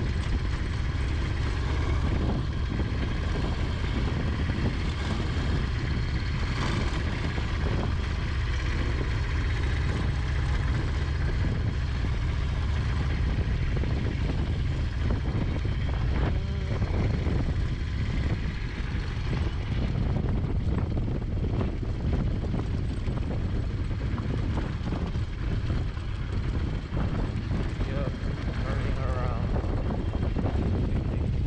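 Harley-Davidson Low Rider S V-twin running steadily under way on a dirt road, mixed with wind rumble on the microphone.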